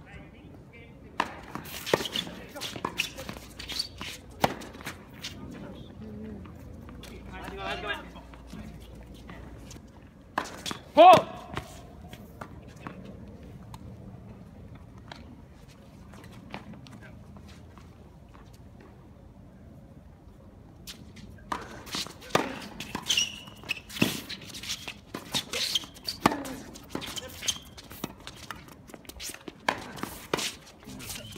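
Tennis balls being struck by racket strings and bouncing on a hard court: sharp pops of rallies in the first few seconds and again over the last eight seconds, with a quieter stretch between points. A short loud shout about eleven seconds in is the loudest sound.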